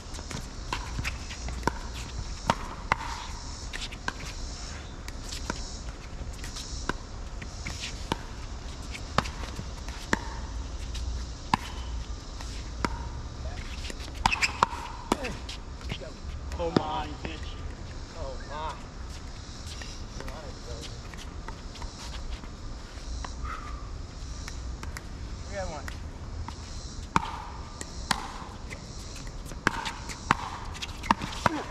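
Pickleball paddles striking the hard plastic ball in a doubles rally: sharp pops about a second apart, thinning out in the middle, with several quick hits again near the end.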